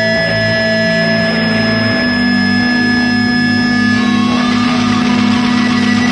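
A live punk band playing loud, distorted electric guitar in long held, droning notes. The low note changes about two seconds in, and the high ringing tones give way to a new chord about four seconds in.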